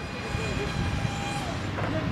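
Small electric propeller motor of a homemade cardboard RC plane-car buzzing steadily as the craft comes in to land.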